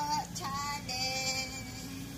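Music with a female voice singing a few drawn-out notes, the longest held for about half a second near the middle.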